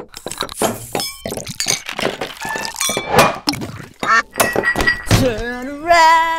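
A quick, busy run of knocks, thuds and glass clinks, as of glasses being knocked about and set down. About five seconds in, a voice starts singing.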